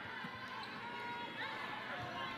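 Basketball game court sound: the arena crowd murmuring, a ball bouncing on the hardwood, and a short sneaker squeak about one and a half seconds in.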